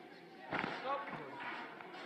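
A single sharp thump about half a second in, followed by voices.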